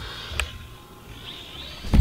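Small toy quadcopter's motors whining faintly and steadily from high overhead, with a low wind rumble on the microphone and one short click about half a second in.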